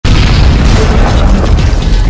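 Explosion-style boom sound effect of a news channel's intro sting: it starts abruptly and holds as a loud, dense rumble, with music under it.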